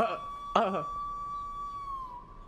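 A single steady high-pitched tone held for about two and a half seconds, dipping slightly in pitch near the end as it fades, with two short "uh" sounds of speech over it.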